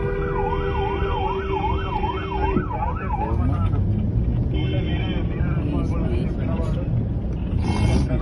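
Police car's electronic siren sweeping up and down about twice a second for about three seconds, over a long steady horn-like tone that stops about two and a half seconds in. Road traffic and engine rumble run underneath.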